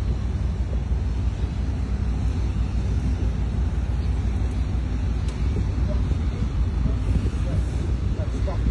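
Steady low rumble of a boat's engine running, even in level throughout, with water and wind noise over it.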